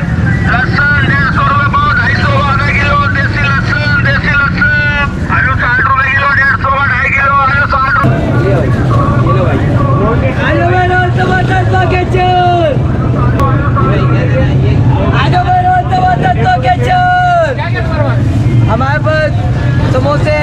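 Busy street-market ambience: overlapping voices talking and calling over a constant low rumble of motorcycle and car traffic. The rumble grows heavier about eight seconds in.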